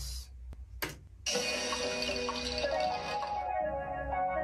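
Two short clicks, then about a second in a layered psychedelic synth solo starts playing back: four synths playing the same line in different octaves, each slightly tweaked, sounding together as one thick lead line.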